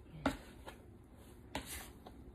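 Plastic dough scraper knocking and scraping on a wooden board while bread dough is worked: a sharp knock about a quarter second in, a softer tap, then a short scrape near the end.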